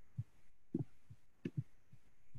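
Faint, soft low taps and clicks, about six in two seconds, from a computer mouse being handled and clicked on a desk.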